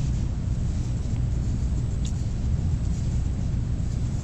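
Steady low rumble of background noise, with no distinct event; the fine paintbrush on paper is not clearly heard.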